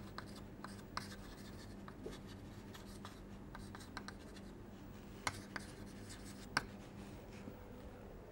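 Chalk writing on a blackboard: faint scratches and taps of the chalk stick, with a few sharper clicks a little after five seconds in and again between six and seven seconds, over a faint steady electrical hum.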